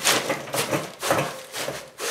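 Wood planer shavings crunching and a plastic barrel liner rustling as they are pressed down by hand inside a barrel, in a few irregular scrunches.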